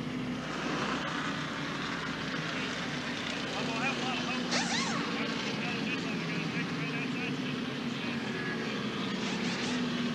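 A field of NASCAR stock cars' V8 engines running steadily at reduced pace under a caution flag, a continuous engine drone with no single car standing out.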